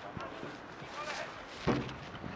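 Live field sound of a polo chukka: ponies' hooves on turf under a steady outdoor bed, brief shouted voices of players in the middle, and one sharp knock near the end.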